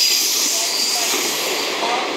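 Freight wagons carrying long rails rolling along the track on a curve: a steady, hissing rolling noise from their wheels, with a few faint, brief tones over it.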